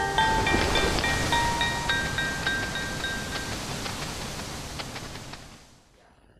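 Tail of a children's TV ident jingle: a shimmering whoosh with a few scattered high tinkling notes, fading out over about five seconds.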